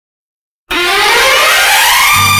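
Opening of a 1990 Hindi film song: silence, then a loud, dense synthesizer sweep comes in suddenly and rises steadily in pitch, leading into the instrumental intro.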